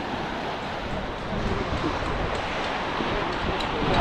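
Steady beach ambience: a hiss of small surf and wind on the microphone, with no distinct events.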